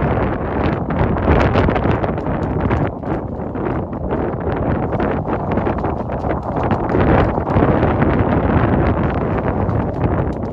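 Strong wind buffeting the microphone, a loud rumbling rush that swells and eases.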